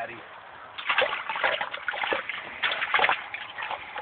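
Northern pike thrashing in an ice-fishing hole, splashing the water in a run of irregular bursts from about a second in.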